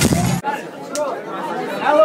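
Loud electronic dance music with heavy bass from a club sound system, cut off abruptly about half a second in. After the cut, people talk close to the microphone.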